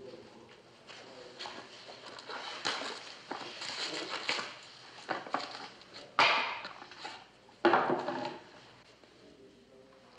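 A small gift-wrapped box being unwrapped and opened: paper rustling and crackling, with two sudden louder sounds about six and nearly eight seconds in.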